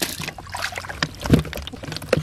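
Live catfish, snakeheads and eels thrashing in a wet foam box, with a few sudden slaps and splashes against the sides; the loudest comes about two-thirds of the way in.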